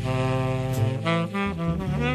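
Jazz music playing, with a horn carrying the melody in a run of gliding notes over a steady bass line.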